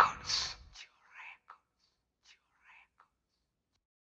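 The song's music cuts off under a second in, leaving a few short, faint whispered vocal syllables that fade out.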